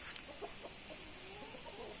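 Chickens clucking faintly in the background, a few short wavering calls over a quiet outdoor hiss.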